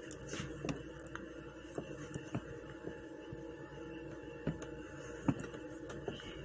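Faint handling clicks and light knocks as a phone is moved against a microscope eyepiece, over a steady low hum in the room. Two slightly louder knocks come near the end.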